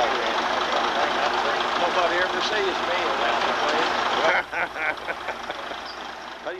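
People talking over a loud, steady din of heavy machinery running. The din drops off abruptly about four seconds in, leaving a few sharp clicks and quieter voices.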